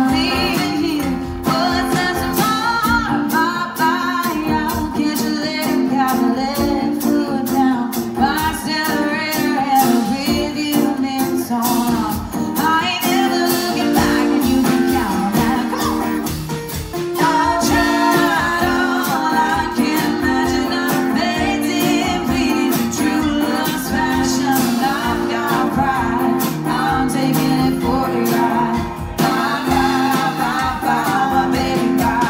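Live acoustic trio: a woman singing lead over strummed acoustic guitar and a drum kit.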